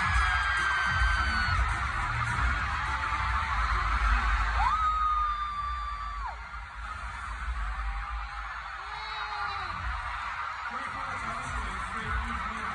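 A large arena crowd of fans screaming and cheering, with single high held screams standing out above the din, over music from the arena's sound system. The crowd is reacting to a grand-prize winner just announced. The screaming eases somewhat after about six seconds.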